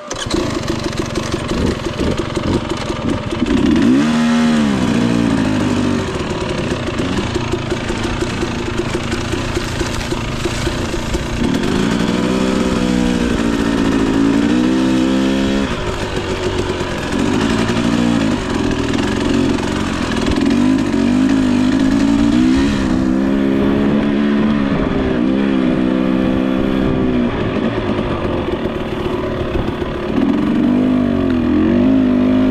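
Husqvarna 300TE two-stroke dirt bike engine running as it is ridden along rough singletrack, starting abruptly and revving up and down over and over as the throttle is worked.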